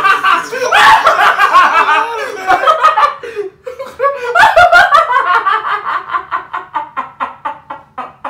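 Someone laughing hard. Toward the end it settles into a steady run of 'ha-ha' pulses, about four a second, that slowly fade.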